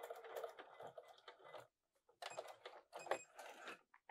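Electric sewing machine running steadily, finishing a line of topstitching, then stopping about a second and a half in. After a short pause come a few light clicks and rustles.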